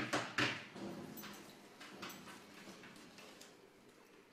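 Rustling of a black fabric bag being rummaged through by hand, loudest in the first half second, followed by a few light clicks and knocks of small items being handled.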